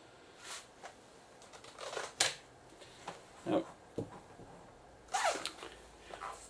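Mostly quiet room with a few faint, short clicks and small handling noises, the sharpest click about two seconds in.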